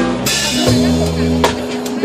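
A live band playing a song: drums and sustained bass notes under electric guitars, with a cymbal crash about a quarter of a second in.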